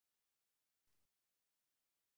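Near silence: a pause with the sound track all but digitally silent.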